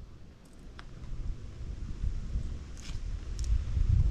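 Wind buffeting the microphone, a low rumble that grows louder toward the end, with a few faint ticks.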